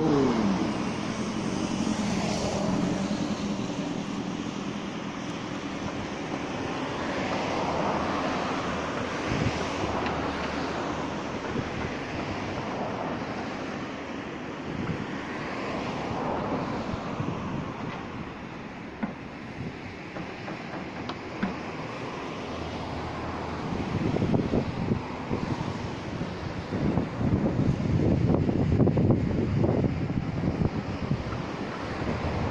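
Wind buffeting the microphone in uneven gusts, heaviest in the last few seconds, over a steady rumble of construction-site machinery.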